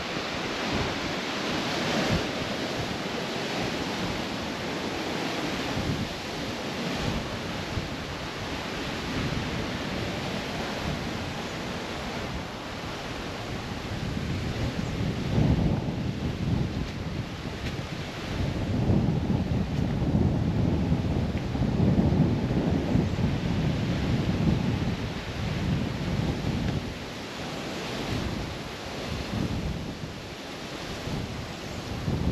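Wind rumbling on the microphone in uneven gusts, heaviest in the second half, over a steady hiss of wind and surf from the sea close by.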